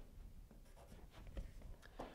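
Faint scratching of a pencil making short marks on a drywall surface, a few brief strokes.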